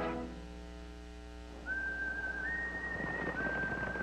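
A lone whistled tune in long held notes starts about a second and a half in: one note, a step up, then back down to a long note with a slight waver. Before it, the last chord of a music track fades out.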